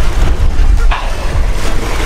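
Wind buffeting the camera's microphone: a loud, uneven rumble.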